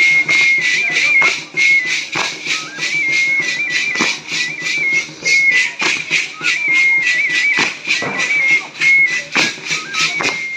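Dance music: a high-pitched pipe plays a short melody that steps between a few notes, over fast, steady percussion at about four beats a second.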